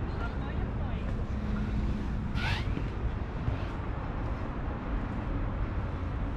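Outdoor city ambience from a high open terrace: a steady low rumble of wind on the microphone and distant traffic below, with indistinct voices of people nearby. A brief high-pitched rising sound stands out about two and a half seconds in.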